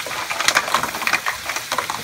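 Mussel shells clattering and knocking against each other and a stainless steel pan as they are moved around, with irregular clicks over a steady sizzle of hot butter.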